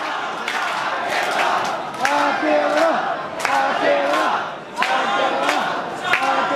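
A platform crowd of railway fans shouting together in unison, a short chanted phrase repeated about three times, as a farewell to the departing last train.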